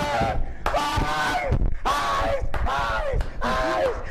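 A man's voice loudly chanting a string of drawn-out, shouted syllables in the manner of a football supporters' chant.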